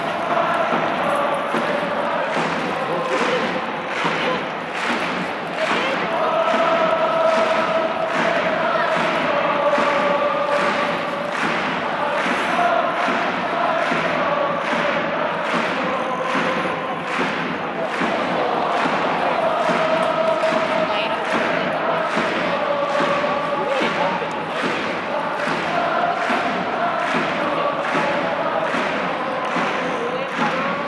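Football supporters in a stadium crowd chanting in unison to a steady beat of drums and clapping, in long repeated sung phrases.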